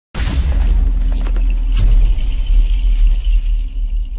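Cinematic intro sting: a loud, deep rumbling boom with sharp crackles and a hissing sweep over it.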